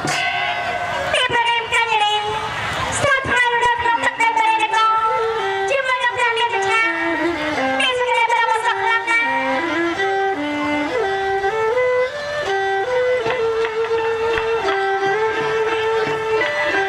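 A woman singing a lakhon bassac (Khmer Bassac theatre) song into a stage microphone over a traditional ensemble led by a bowed fiddle, the melody moving in held, stepping notes.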